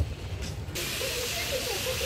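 Background music, then, about three-quarters of a second in, an abrupt switch to the steady hiss of spraying water from plaza fountain jets, with people's voices over it.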